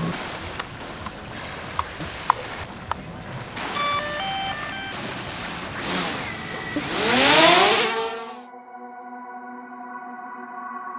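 DJI Mavic Air drone powering up with a short run of electronic beeps about four seconds in, then its motors and propellers spinning up with a loud rising whine that fades out around eight seconds in. Ambient electronic music with sustained tones follows near the end.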